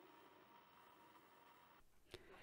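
Near silence: faint room tone with a faint steady hum.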